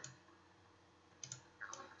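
Near silence with a quick pair of faint computer-mouse clicks a little past a second in, as songs are dragged to a new place in a list.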